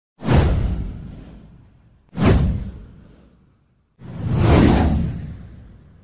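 Three whoosh sound effects for an animated title card: the first two hit suddenly and fade away over a second or so, and the third swells up a little more slowly before fading.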